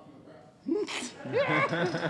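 A human voice breaking in suddenly about half a second in, with a sharp hiss near the one-second mark, followed by talk.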